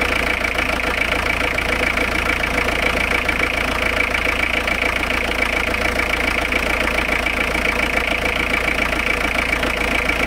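Citroën C25 motorhome engine idling steadily just after starting, heard up close in the open engine bay.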